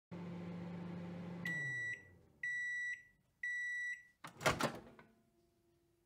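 Microwave oven running with a steady hum that winds down in pitch as it stops. Then come three high beeps about a second apart, followed by a clatter as the door is opened.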